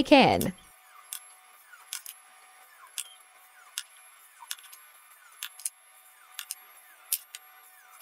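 Faint, irregular clicks and scraping of a small hand drill being twisted into the edge of a cured resin keychain piece, about one or two clicks a second, with no motor sound.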